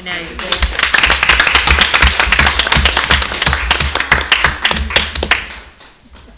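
Applause from a small group of people: dense, irregular clapping for about five seconds that dies away near the end.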